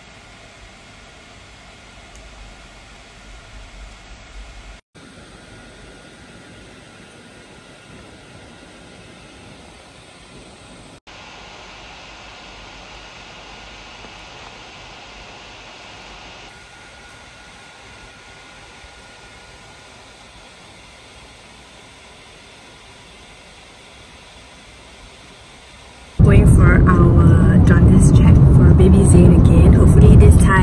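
A faint, steady hiss of room tone, broken by brief dropouts where the clips cut. About 26 seconds in, a much louder woman's voice starts over the low rumble of a car cabin.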